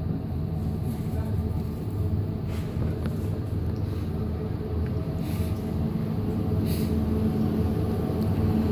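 Steady low mechanical hum of a supermarket's refrigerated display cabinets and ventilation, with a few brief soft rustles.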